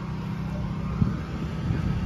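A car engine running steadily with a low rumble.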